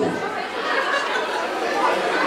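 Live audience in a hall reacting to a joke, a steady murmur of chatter and laughter.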